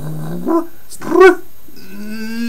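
A man's wordless voice: a low hum, then a short pitched cry about half a second in and a louder cry that rises and falls about a second later.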